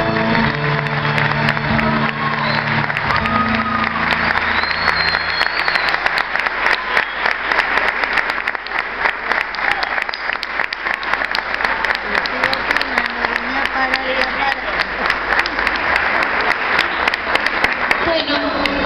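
Audience applauding loudly, with a few voices calling out, as the last chord of an acoustic guitar song rings out over the first few seconds.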